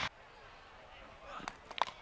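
Faint open-air ambience, then near the end a single sharp crack of a cricket bat striking the ball in a pull shot, with a fainter tap just before it.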